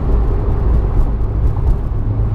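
Engine and road noise heard inside a Porsche's cabin while it cruises on a freeway: a steady low rumble.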